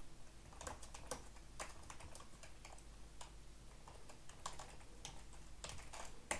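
Faint typing on a computer keyboard: irregular, separate key clicks as a short shell command is entered.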